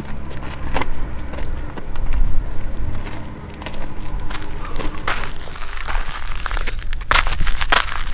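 Footsteps and scrambling on loose, crunchy rock and gravel during a steep climb, with a few sharp crunches, most of them in the last few seconds. A low steady rumble sits underneath in the first half.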